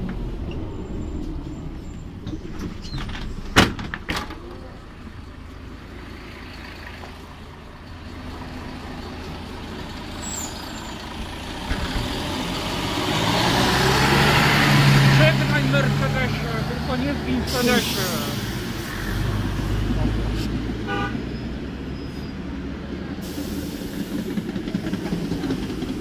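Mercedes-Benz O405 city bus with its OM447h diesel and ZF 5HP500 automatic gearbox pulling away and driving past, its engine note building to a peak about fifteen seconds in, then fading. A short hiss of air comes near the end of the pass.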